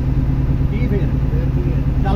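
A coach's engine running with a steady, loud low drone, heard from inside the driver's cab.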